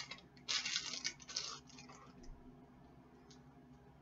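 Crinkling of a small plastic packet as it is handled and torn open, in a run of short crackles during the first second and a half, then only faint room noise.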